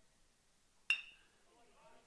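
A metal baseball bat strikes a pitched ball once, about a second in. It makes a single sharp ping with a brief ringing tail, and the ball is hit hard.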